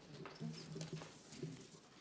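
Quiet room tone with a faint, indistinct voice murmuring away from the microphone and a few light taps or clicks.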